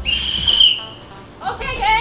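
A sports whistle blown in one shrill blast of about a second, followed by voices calling out.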